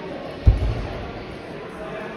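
A single heavy low thud about half a second in, fading over about half a second, over a steady murmur of voices in a large hall.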